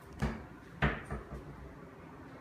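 Footsteps on wood flooring: a few heavy thuds, the two loudest about two-thirds of a second apart, followed by lighter steps.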